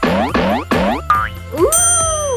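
Three quick falling cartoon 'boing' sound effects over background music, followed near the end by a voice saying 'Ooh'.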